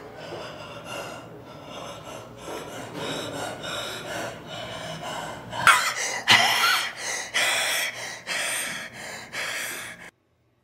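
A man breathing hard through clenched teeth, strained and gasping, with the breaths growing into a louder series of harsh rasping exhales about once a second from a little past halfway.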